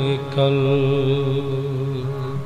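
Gurmat kirtan: a long, steady held note of sung shabad with its musical accompaniment, a brief dip and a fresh start of the note about half a second in.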